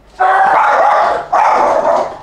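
A dog barking: two long, high-pitched barks back to back, each about a second.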